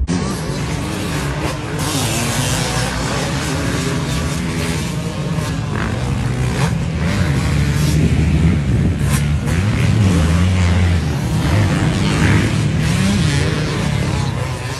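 Freshly rebuilt Yamaha YZ250 two-stroke motocross engine revving up and down as the bike is ridden around the track and over jumps, its pitch rising and falling.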